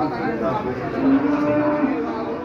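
A cow moos once: a single held call lasting about a second, starting about a second in, over the chatter of people around it.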